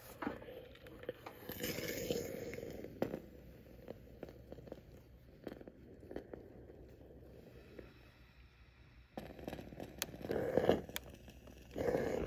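Cotton quilt patchwork being smoothed by hand and pressed with a steam iron on a wool pressing mat to set a seam open: soft rustling and scraping with a few light knocks as the iron is set down and slid over the fabric.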